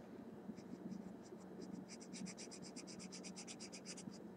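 A pencil coloring on paper, scratching back and forth faintly. A few scattered strokes come first, then from about halfway a quick even run of about nine strokes a second.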